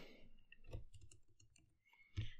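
A few faint, scattered clicks at a computer over near silence.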